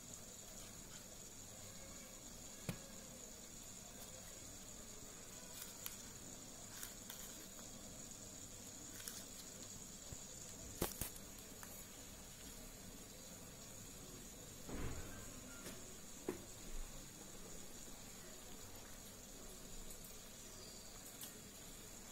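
Quiet room tone with a steady faint high hiss, broken by a few faint taps and soft rustles of paper as a folded paper fan is pressed and held onto a card.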